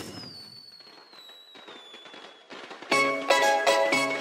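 A firework sound effect opens a song's intro: a sudden burst, then a slowly falling whistle over faint crackling. About three seconds in, the song's music comes in loud, with rhythmic plucked-string notes.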